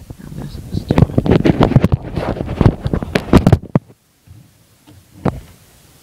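Screwdriver forced into a tight laptop case screw and turned, making a loud burst of rapid clicking and scraping close to the microphone for about three seconds, then one more click near the end.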